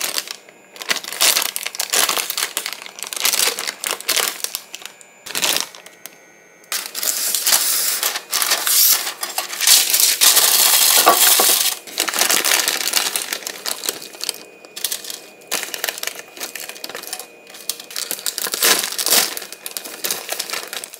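Plastic bags of frozen chicken fries and curly fries crinkling as they are handled, with parchment paper rustling as it lines an air fryer basket. The crinkling comes in short irregular bursts, with a longer continuous stretch in the middle.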